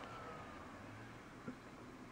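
Lenovo desktop tower just switched on and running faintly: a quiet whine falling slowly in pitch over a low hum, with a small click about one and a half seconds in.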